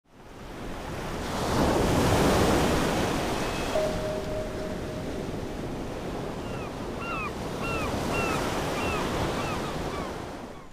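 Ocean surf washing steadily, swelling in over the first couple of seconds. In the second half a bird gives a string of short calls, about two a second.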